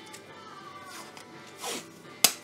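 Masking tape being pulled off its roll, a brief rip about three-quarters of the way through, over faint background music.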